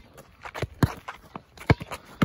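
A basketball being dribbled: several separate bouncing thuds spaced about half a second to a second apart, the loudest near the end, mixed with shuffling footsteps.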